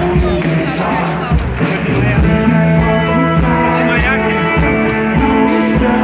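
Live rock band playing, with singing over guitar and a steady beat; a pair of maracas is shaken close to the microphone in time with the music.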